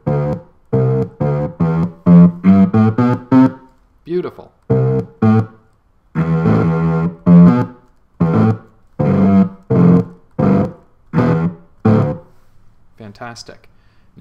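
Sampled notes triggered from a MIDI keyboard and played by a Max/MSP polyphonic sampler patch: a quick run of short pitched notes, then a longer held sound, then single notes spaced out, stopping about two seconds before the end.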